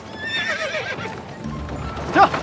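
Horse whinnying: a wavering neigh in the first second, over background music.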